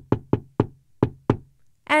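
Knuckles knocking on a wooden door, about six sharp knocks in a quick, uneven rhythm.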